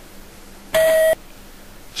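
Single electronic game-show beep: one steady tone of a little under half a second, about a second in, starting and stopping abruptly.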